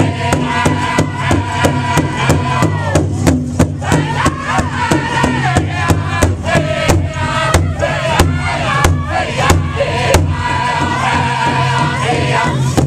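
Powwow drum group: several men strike one large shared drum in a steady beat of about three strokes a second while singing together, holding long notes that slide down in pitch.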